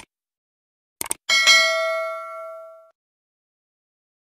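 A mouse click, then a quick double click about a second in, followed by a single bell-like ding that rings out and fades over about a second and a half. This is the stock subscribe-button and notification-bell sound effect.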